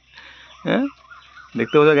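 A green-headed domestic drake duck gives one short call about two-thirds of a second in while it is held by the wings.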